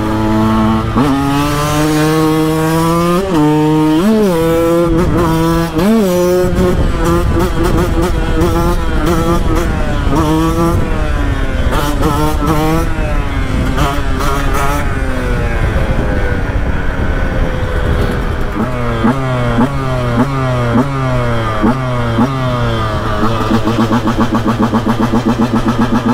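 KTM 125 EXC two-stroke single-cylinder engine revving hard under way. The pitch climbs through each gear and drops at every shift. In the second half the revs rise and fall in quick repeated swells.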